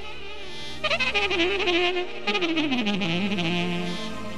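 Live band music led by a reed wind instrument in the saxophone or clarinet style. After a softer opening second it plays fast ornamented runs, then slides down into a long held low note.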